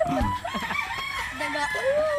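A rooster crowing, one long drawn-out call starting in the second half, with voices in the background.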